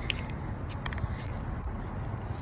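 Steady low rumble of wind buffeting a phone's microphone, with a few short faint clicks.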